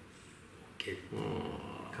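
A man's quiet, trailing speech: a short pause, then a few soft, low words.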